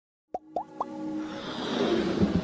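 Intro sound design for an animated logo: three quick rising pops about a quarter second apart, then a whoosh that swells louder toward the end over a low held music tone.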